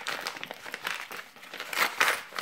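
A white padded mailer envelope crinkling as hands pull it open, in irregular crackles that are loudest near the end.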